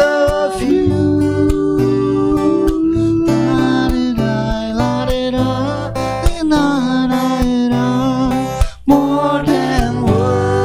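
Acoustic guitar strummed under a slow vocal melody sung in long held notes, with a brief break in the sound a little before the end.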